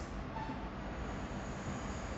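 Steady low hiss and rumble of room noise, with no clear strokes or knocks.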